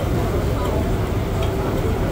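Indistinct voices over a steady low rumble, with a few faint clicks.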